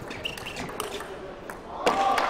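Celluloid table tennis ball being hit in a rally, several sharp clicks of ball on bat and table. Near the end comes a louder burst with a held pitch, a shout as the point ends.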